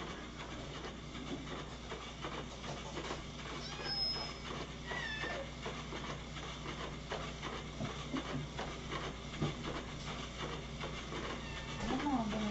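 Indoor room tone with a steady low electrical hum, scattered light knocks and clatter, and two brief high chirps about four and five seconds in. A cat's falling meow comes right at the end.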